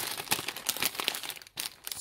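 Plastic food packaging and shopping bags crinkling as groceries are handled and picked up, a dense run of small crackles with a brief pause near the end.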